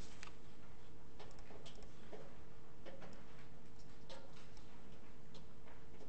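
Quiet room tone with a faint steady hum, broken by about ten light, irregularly spaced clicks.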